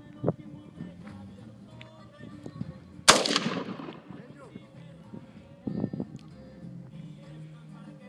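A single AK rifle shot about three seconds in: one sharp crack whose echo dies away over about a second.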